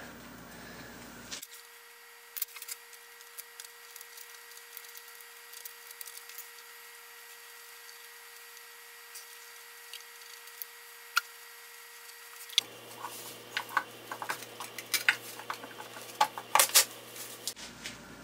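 A screwdriver working at the screws of a drill press head's cover plate, making small scattered metal clicks and scrapes that come more often near the end.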